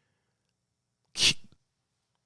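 A single short, sharp breath from the male narrator about a second in, a brief hissing burst in an otherwise silent pause in his speech.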